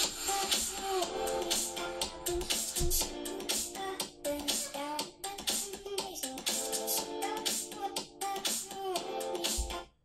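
A pop song with singing played at medium volume through the HTC One smartphone's front-facing BoomSound stereo speakers, really clear. The song cuts off abruptly near the end.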